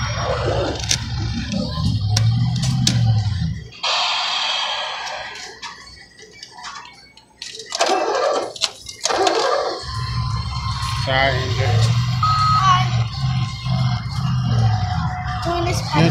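Arcade game-room din: electronic game music and jingles from the machines with indistinct voices. The low background drops away for several seconds in the middle.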